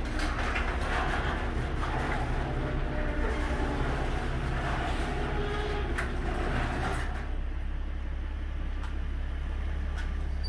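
A garage door opener raising a sectional overhead door, the door rattling up its tracks, until it stops about seven seconds in. A car engine idles low underneath throughout.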